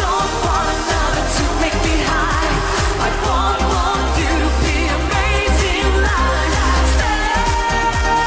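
Live pop song with a steady dance beat and heavy bass, with wavering wordless singing over it; near the end a long note is held.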